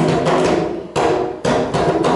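A child striking a tall hand drum with his palms: about five uneven hits in two seconds, each ringing on briefly.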